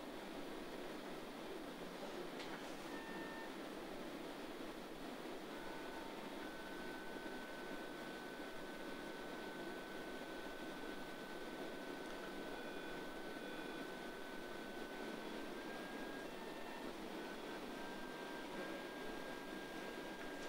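A phaco machine's thin electronic tones over a faint steady hiss: a few short beeps at first, then one long held tone that steps slightly higher partway through and comes back near the end, the kind of pitch-coded tone with which a phaco machine signals aspiration vacuum.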